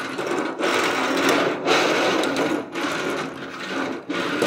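Die-cast toy cars rolling and rattling across a red metal tool-cart tray, a continuous whirring rattle in several runs with short breaks between pushes.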